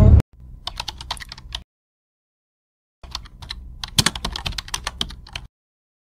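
Computer keyboard typing: rapid key clicks in two runs, a short one of about a second near the start and a longer one of about two and a half seconds beginning about halfway through, with silence between.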